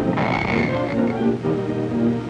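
Musical accompaniment added to a silent film, broken in the first second by a short rasping, croaking burst that covers the music, before the tune carries on.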